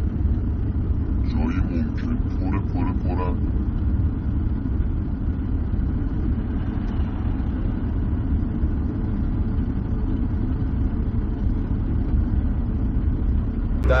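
Steady low rumble of a moving car's engine and road noise, heard from inside the car, with a few short spoken words between about one and three seconds in.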